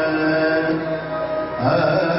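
Sikh kirtan music: a harmonium holds sustained reed notes under chant-like singing, with tabla accompaniment. A new low note comes in about one and a half seconds in.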